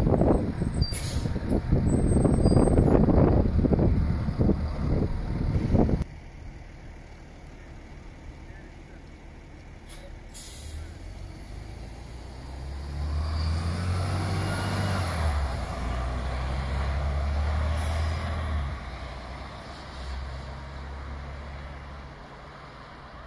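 City transit bus passing close by, loud, with gusty noise on the microphone. After a sudden drop in level there is a short, sharp hiss. Then the bus's engine rumbles and climbs in pitch in steps as it accelerates away, fading near the end.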